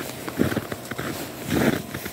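Footsteps on a snow-packed road, with two heavier steps a little over a second apart.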